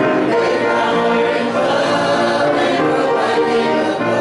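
A church congregation singing a hymn together, with sustained notes over instrumental accompaniment.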